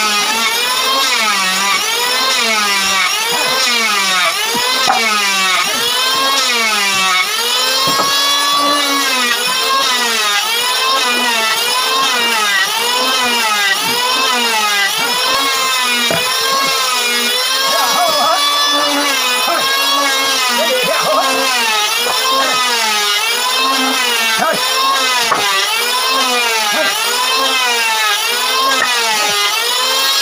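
Handsaw cutting through a wooden board in steady back-and-forth strokes, a little over one a second, each stroke a pitched rasp that rises and falls.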